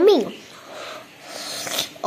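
A girl's voice saying "yummy" in a sing-song rise and fall at the very start, then a soft breathy hiss about a second and a half in.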